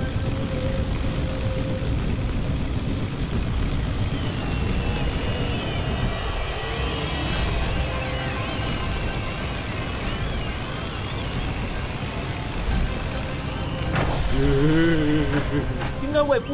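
Cartoon sound effect of a flying airship's engines: a low steady rumble under the music score, with a brief hiss about seven seconds in. A voice comes in near the end.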